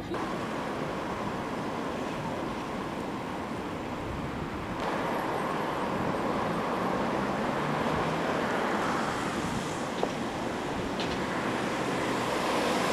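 Street traffic: a steady noise of cars and tyres passing along a road. The sound steps up slightly about five seconds in, and there is a faint click near ten seconds.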